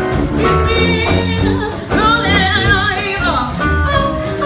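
Live traditional jazz band playing: a woman sings with a wide vibrato over sousaphone, upright bass, guitar, horns and drums. Low bass notes and drum strokes keep a steady swing beat.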